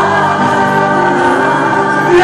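Congregation singing a gospel worship song together over music, loud and steady.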